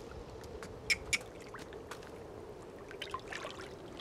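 Hot spring pool water trickling softly and steadily, with two brief sharp sounds about a second in.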